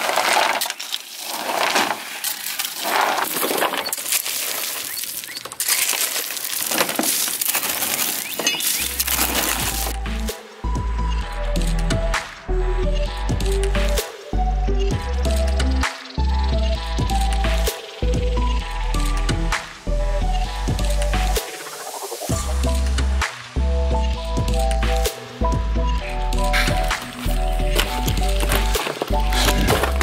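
A shovel scraping into and tossing crushed rock out of a pickup bed, stones clinking and rattling, for the first several seconds. From about nine seconds in, background music with a heavy bass beat takes over, with faint scrapes and clinks still under it.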